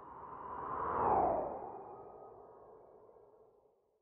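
Transition sound effect: a whoosh that swells to a peak about a second in, with a falling sweep in pitch, then fades out over the next few seconds.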